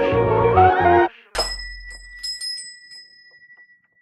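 A hip-hop beat plays for about a second and then cuts off abruptly. A moment later a single bright bell-like ding lands on a short low boom and rings out, fading away over about two seconds, like a closing logo sting.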